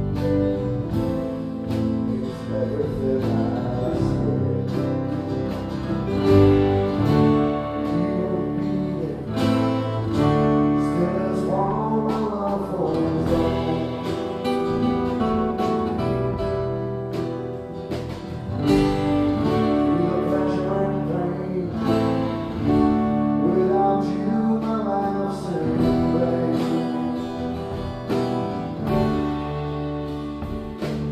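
Live acoustic band music: two acoustic guitars playing a slow love song over keyboard, with singing.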